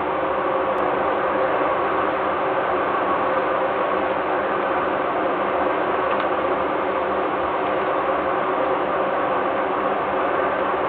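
Steady mechanical hum and hiss with faint held tones, unchanging throughout, with no bird calls.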